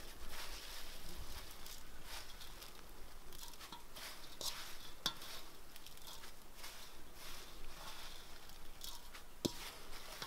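Good King Henry seed heads, stems and leaves rustling and crackling as fingers rake through them in an enamel basin, with a few small sharp ticks scattered through.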